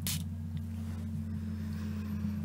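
One short spritz from a pump spray bottle of lavender pillow spray: a brief hiss at the very start, then only a steady low hum underneath.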